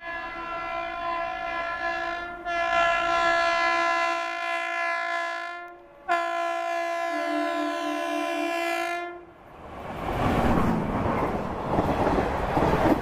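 An Indian Railways WAP-5 electric locomotive sounds its horn in two long blasts as it approaches. The first lasts about six seconds and swells partway through; the second, about three seconds, follows a short break. About ten seconds in, the steady rushing clatter of the train's coaches passing close by takes over.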